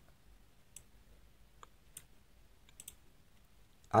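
A few faint, widely spaced clicks from a computer mouse.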